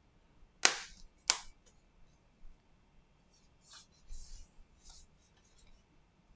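Two sharp plastic snaps, about two-thirds of a second apart, as the Huawei MediaPad T5's new display is pressed into its housing and its clips engage. Softer clicks and handling rubs follow.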